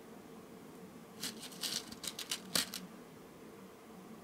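Small wooden beads rattling and clicking against a clear plastic bead tray as fingers pick through them: a quick cluster of sharp clicks starting a little over a second in and stopping near the three-second mark.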